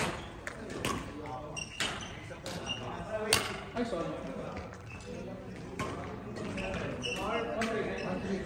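Badminton rackets striking a shuttlecock in a rally: sharp cracks roughly a second apart, the loudest a little over three seconds in, with short squeaks of court shoes between them.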